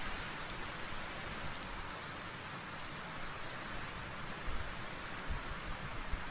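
Faint steady hiss of background noise, with a few soft low thumps in the second half.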